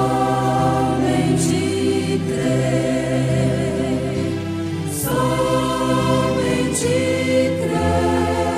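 Gospel choir music: voices singing long held notes over a low accompaniment, with a new sung phrase starting about five seconds in.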